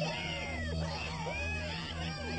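Cartoon soundtrack: a flurry of short, overlapping whining sounds that glide up and down in pitch, like meows, over a steady low hum.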